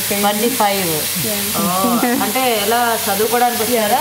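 Thinly sliced boneless chicken sizzling steadily as it fries in oil in a large pot, under women's conversation in Telugu.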